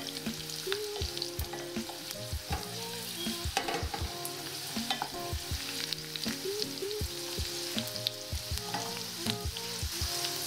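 Garlic cloves, dried red chillies and panch phoron sizzling steadily in hot oil in a stainless steel pot, with a wooden spoon stirring and knocking lightly against the pot.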